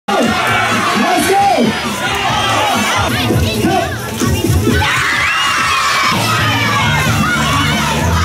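A large crowd of boys and men cheering and shouting excitedly, many voices overlapping in a big hall.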